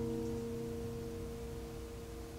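Acoustic guitar's last chord left ringing and fading slowly away, with no new notes played.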